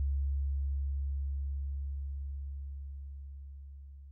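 The last note of a rock song: a single deep, steady bass tone slowly fading away. A few faint higher notes flicker in the first second.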